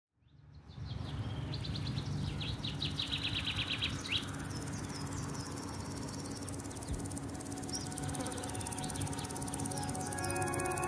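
Outdoor meadow ambience fading in: a bird sings a fast trill of evenly repeated high notes for a couple of seconds, ending in a falling sweep, followed by scattered high chirps, over a low steady rumble.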